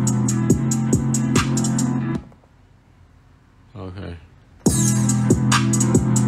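A drum-machine beat playing back from an Akai MPC Live II, with held bass notes under a quick, even hi-hat pattern. It stops about two seconds in and starts again near the five-second mark, with a brief voice in the gap.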